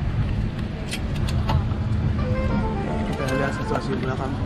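Steady low hum of an airliner cabin's air system, with faint, indistinct voices and a few light clicks under it.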